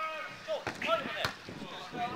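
Players' distant shouts and calls on an outdoor five-a-side football pitch, with two sharp thuds of the football being struck, about half a second apart, in the first half.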